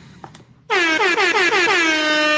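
A truck air horn sounds about two-thirds of a second in and holds on. It is one loud pitched blast with a wavering start that settles into a steady tone.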